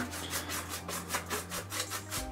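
Paintbrush dry-brushing metallic paint onto an EVA foam bracer: fast scratchy back-and-forth strokes, about eight or nine a second.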